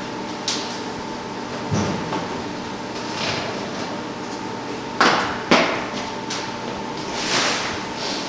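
Sheet-metal locker door knocking and then clanking twice, sharply, about five seconds in, as someone climbs out of the locker, with a few lighter knocks and rustles around it. A steady hum runs underneath.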